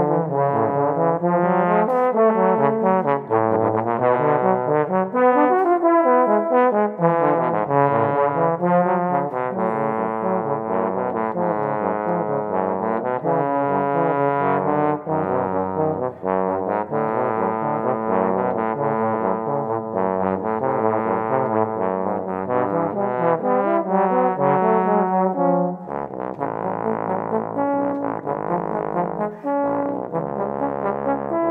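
Two bass trombones playing a tango duet, both parts moving through a continuous run of notes. About 26 seconds in the playing drops to a softer passage.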